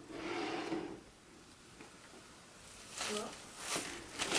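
Faint rustling of plastic Easter grass as a stuffed toy is pressed into a filled basket, mostly in the first second.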